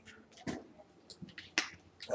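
Two faint sharp clicks about a second apart, with a few softer ticks between them, in a quiet room.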